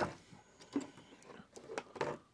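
Faint, scattered small clicks and light rustling of a hand opening a cardboard advent-calendar door and handling small plastic LEGO pieces.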